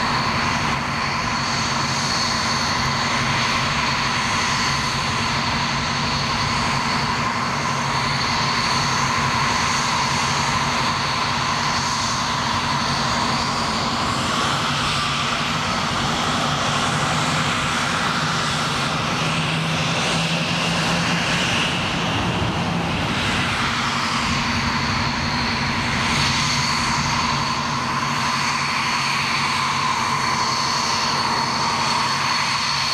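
Dassault Mirage 2000 fighter's single SNECMA M53 turbojet running at ground idle or taxi power: a steady jet roar with a high whine. For several seconds around the middle the whine tones shift in pitch, then settle back.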